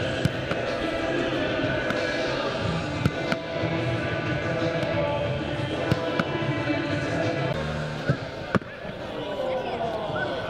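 Music playing, broken by several sharp knocks of footballs being struck and caught in a goalkeeper's gloves.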